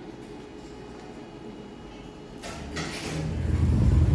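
Quiet room tone, then about two and a half seconds in a short hiss and a growing low rumble of street noise with traffic going by.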